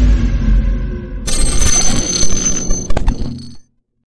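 Intro sound effects for an animated logo reveal: a deep rumbling boom fading out, then a bright bell-like ringing shimmer from about a second in that dies away.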